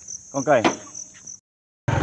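Insect chirping in a steady, high-pitched pulse, about four pulses a second, cut off abruptly about one and a half seconds in.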